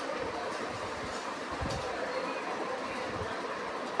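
Steady background noise: an even rumble with hiss, holding one level throughout.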